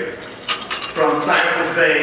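A few sharp clicks and clinks, then a man's voice over the podium microphone from about a second in.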